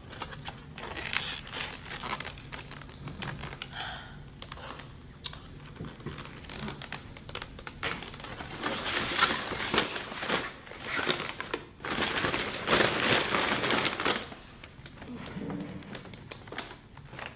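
Takeout packaging rustling and crinkling as a foam clamshell box is handled and packed away, in irregular bursts that are loudest in a long stretch from about halfway to near the end.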